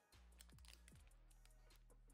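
Faint background music with light crinkling clicks as a foil Pokémon booster pack is picked up and handled.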